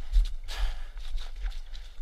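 Footsteps on a woodland trail with brush and leaves rustling as a person ducks under a fallen tree. There are uneven low thumps and a short burst of rustling just after the half-second mark.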